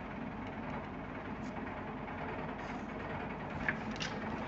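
Steady low room hum, with a single light tap about three and a half seconds in as drawing tools are handled on the paper.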